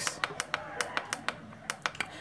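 Up-arrow push button on an XK-W2001 digital thermostat controller pressed over and over, a run of quick small clicks, several a second, as the set temperature steps up in tenths of a degree.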